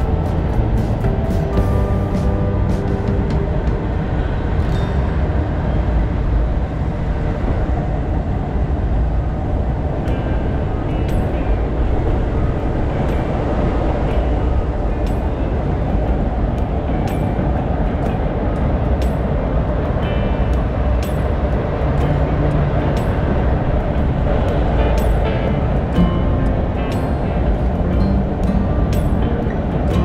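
Freight train crossing a steel trestle: a steady deep rumble with many sharp clicks and clanks scattered through it.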